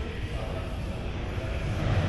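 Ambience of a large retail showroom: a steady low rumble with faint voices of people in the background.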